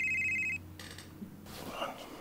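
Mobile phone ringtone, a warbling two-tone electronic trill, ringing and then breaking off about half a second in. A brief rustle follows during the gap between rings.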